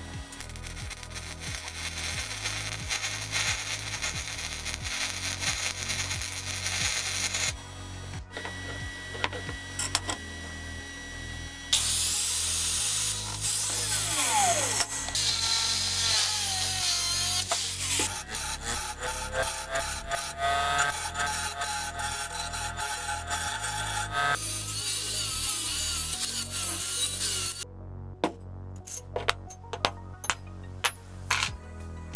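Angle grinder working steel. It first grinds over a welded square-tube clamp body, then from about twelve seconds in cuts through threaded steel rod, its whine dipping and rising as the disc bites. It stops shortly before the end, leaving a few light clicks.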